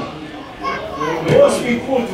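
Voices calling out across an outdoor football ground, heard through the field microphone: a few short, high-pitched shouts after about a second.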